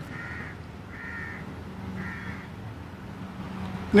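A bird calling three times, short harsh calls about a second apart, over steady background noise with a faint low hum.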